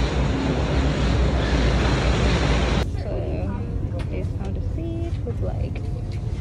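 Loud, steady rushing noise with a deep rumble while walking through an airport jet bridge. It cuts off abruptly about three seconds in, giving way to the quieter hum of an aircraft cabin with a few faint voices and clicks.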